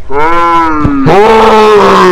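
Teenagers' voices hollering long, drawn-out calls that slide down in pitch, one after another. In the second call a lower voice holds on alongside.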